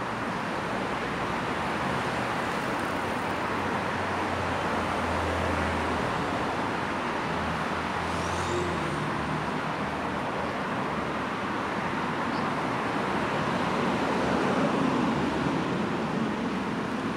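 Steady road traffic noise, with a low engine hum that swells about four to six seconds in.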